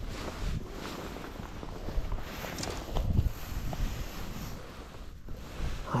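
Wind on the microphone and rustling of dry grass and clothing as the angler moves at the water's edge, with a few light knocks about two and a half to three seconds in.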